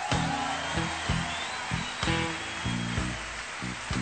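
Live rock band playing: an electric guitar solo over bass and drums, with a sustained, slightly bending high note across the middle.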